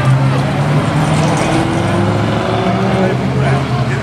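Spectators' voices chattering over the steady low hum of road traffic passing.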